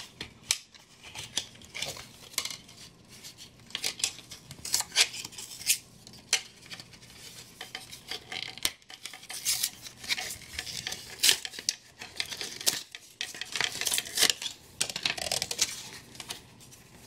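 Cardboard packaging being torn and peeled off a plastic mandoline slicer by hand: a run of irregular crackles, rips and clicks as the card sleeve and taped inserts come away and the plastic body is handled.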